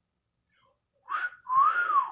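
A man whistling through pursed lips: two short notes about a second in, the second gliding up and then back down.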